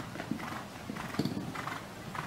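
Faint, irregular hoofbeats of a show-jumping horse cantering on a sand arena.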